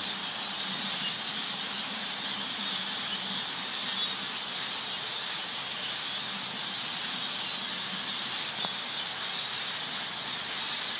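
A large flock of birds perched in a bare tree, all chirping at once in a dense, steady chatter that is high-pitched and loud.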